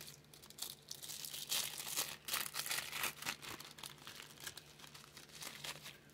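Product packaging crinkling and rustling as it is handled and opened, a run of irregular crackles that is busiest in the first half.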